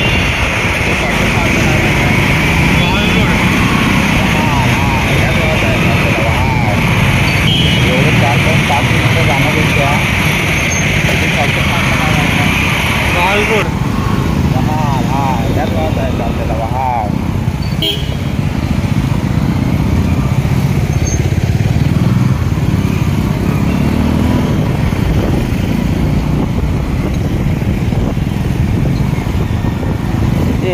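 Wind buffeting the microphone over a motorcycle engine running on a moving ride through traffic, with indistinct talking mixed in. A steady higher hiss drops away about halfway through.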